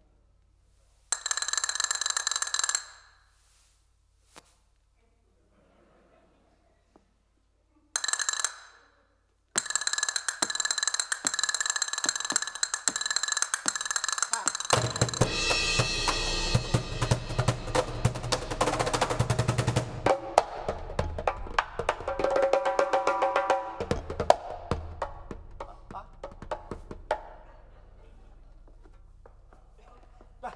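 Live percussion on a cymbal and drums: two short rolls with a ringing metallic shimmer are separated by pauses. Then comes a fast, dense drumming passage from about ten seconds in, with heavy low drum strokes joining about halfway. It thins out and fades near the end.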